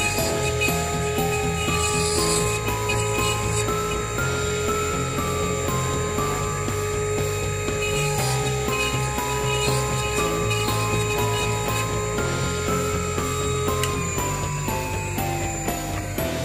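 A dental lab lathe spins a fine bur at a steady speed while a denture tooth is drilled against it. Its tone drops in pitch as it winds down near the end. Background music plays throughout.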